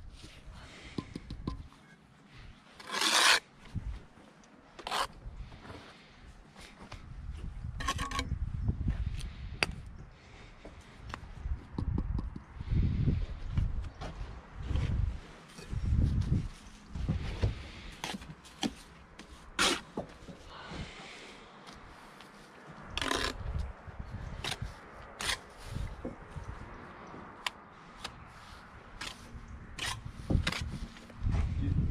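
Bricklaying by hand: a steel trowel scraping and spreading mortar, and clay bricks set and knocked down onto a wall and picked off a stack on wooden scaffold boards. It comes as a string of scrapes, taps and knocks, with a few longer rasping scrapes.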